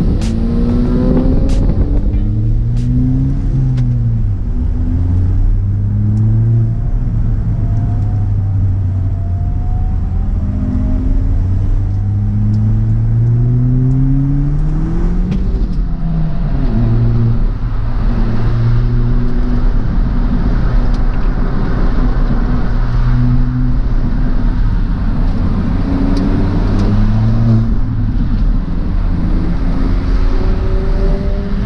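A 2018 Ford Fiesta ST's turbocharged 1.6-litre four-cylinder, fitted with an aftermarket intake and cat-back exhaust, is heard from inside the cabin as the car accelerates onto the track. The engine note climbs in long pulls and falls back at each gear change; the longest pull ends about halfway through.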